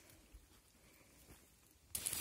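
Near silence, with two faint, brief ticks.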